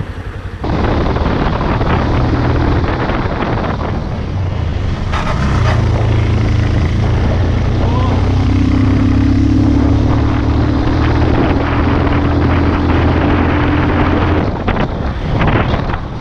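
Motorcycle engine running while riding, with wind rushing over the microphone. The engine note rises about six seconds in, holds steady, and drops away near the end.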